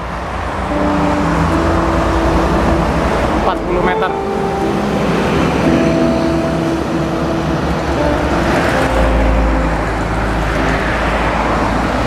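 Steady noise of busy toll-road traffic: cars and trucks passing, their engine tones changing as each goes by, with a heavier low rumble from about nine seconds in.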